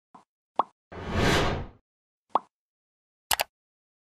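Animated logo intro sound effects: a few short pops, a whoosh that swells and fades about a second in, and a quick double click near the end.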